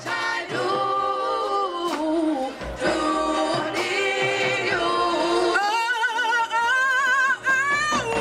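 Music: a group of voices singing a slow melody, the held notes in the second half sung in parts with a wavering vibrato.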